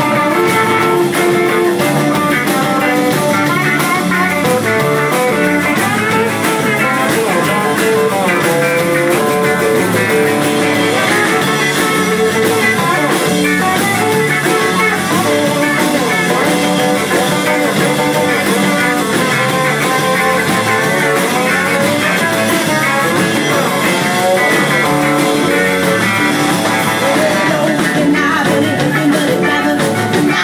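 Live rock 'n' roll band playing a steady, loud instrumental passage led by electric guitar over drums.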